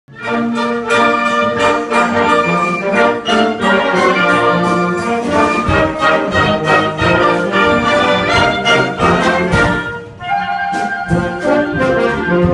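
A wind band of flutes, saxophones and brass playing a piece together in sustained chords. The sound drops off briefly about ten seconds in, then the band plays on.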